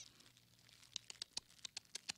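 Faint crackling of a campfire: sparse, irregular sharp pops and snaps starting about a second in.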